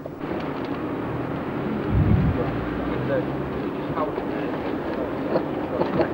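Steady outdoor background noise with faint, scattered distant voices and a single dull low thump about two seconds in.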